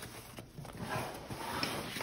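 Nylon fabric of a Marom Dolphin Baloo 40-liter backpack rustling as it is turned over on a wooden surface, with a few light knocks.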